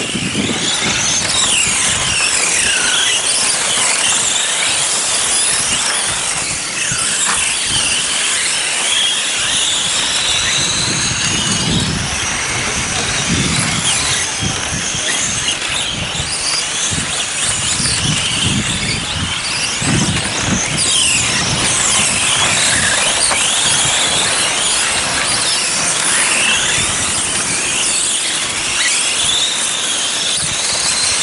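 Several electric radio-controlled racing cars running flat out, the high whine of their brushless motors rising and falling with throttle, several pitches overlapping.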